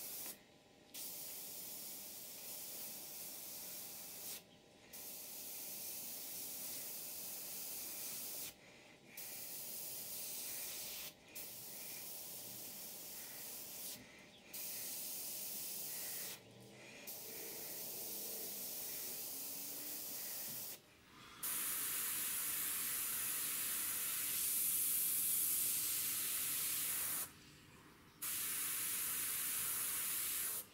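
Hiss of air from a GSI Creos PS.770 gravity-feed airbrush spraying paint in passes close to the canvas. It stops briefly about eight times as the trigger is let off, and is louder for the last third.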